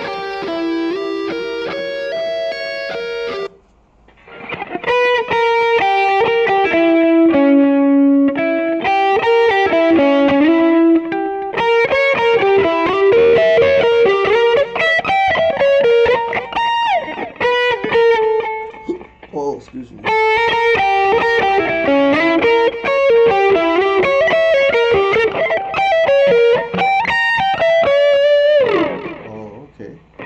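Distorted electric guitar playing fast neoclassical diminished arpeggio runs, the same pattern repeated and shifted up the neck, with a short break about four seconds in. Near the end a held note slides down in pitch.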